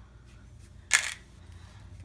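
A single sharp click about a second in, as a game piece is set down on the ship board to mark damage.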